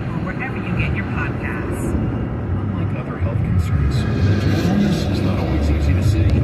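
Steady road and tyre rumble heard from inside a car cruising on a freeway, swelling slightly in the second half.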